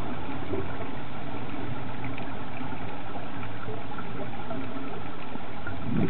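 Steady underwater noise picked up by a diving video camera in its housing, with a few faint scattered ticks.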